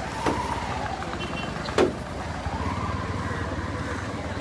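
Street commotion of a crowd moving alongside riot police: a noisy outdoor background with faint drawn-out calls and two sharp knocks, the louder one a little before the middle.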